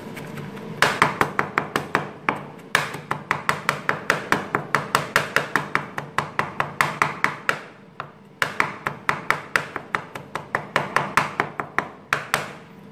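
Broad kitchen knife mincing fresh garlic and ginger on a wooden cutting board: rapid chopping knocks, about six a second, in several runs with short pauses.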